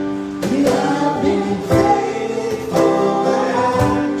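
A man singing a worship song to his own strummed acoustic guitar.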